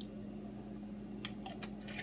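Quiet room with a steady low hum. In the second half there are a few faint light clicks as a small bottle cap and bottle are handled over a jar while a capful of liquid is added.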